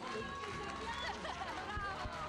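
Indistinct voices of several people talking in a large room, with a few low thumps near the end.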